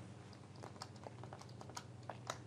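Faint, irregular clicking of computer keys being pressed, a dozen or so light clicks.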